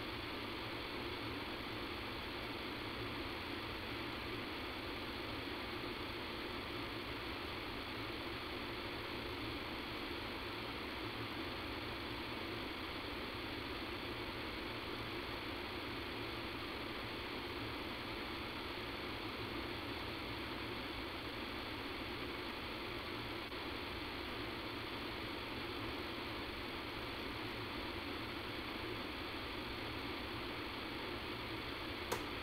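Steady hiss with a low rumble on an open conference-call line, unchanging throughout; the recording has a sound-quality fault that its uploader could not explain.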